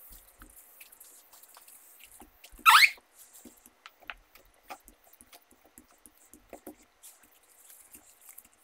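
A cloth wiping a laptop LCD panel, with faint rubbing and light ticks. About three seconds in comes one loud, short squeak that rises in pitch.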